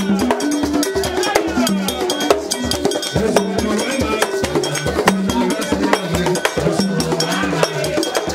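Vodou ceremony music: fast hand drumming with a struck metal bell keeping time, and a sung melody over it.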